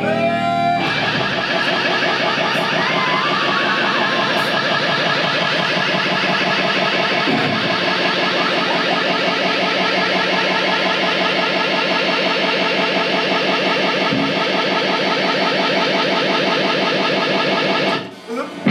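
Distorted electric guitars played live through effects, holding a loud, dense, steady wall of sound.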